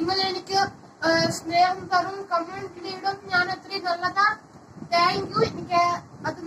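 A boy singing.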